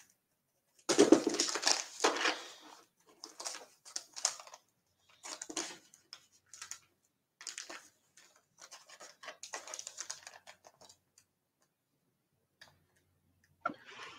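Irregular bursts of rustling and scratching handling noise, loudest about a second in, then softer scattered bursts that die away after about eleven seconds. This fits packets of soft-plastic fishing baits being handled close to a microphone.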